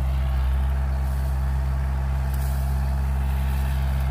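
A farm machine's engine running steadily, a low, even hum.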